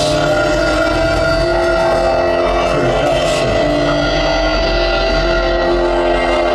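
Live rock band playing a loud, steady drone, with keyboards holding sustained notes over a low rumble.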